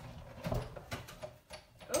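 Sizzix Big Shot die-cutting and embossing machine being hand-cranked, an embossing folder passing through its rollers, with a few irregular knocks and creaks.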